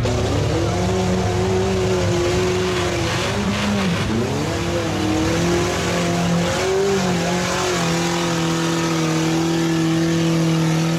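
Lifted pickup truck's engine labouring through deep mud, its revs rising and falling as the tyres churn, with a sharp dip and recovery about four seconds in, then a steadier pull near the end.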